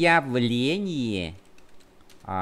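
Typing on a computer keyboard, light key clicks as a word is typed. For the first part a voice holds a long, wavering hesitation vowel over it.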